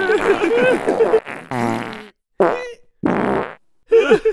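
Cartoon fart sound effects from several characters at once: a rapid, dense run of farts, then three separate drawn-out farts with short silent gaps between them.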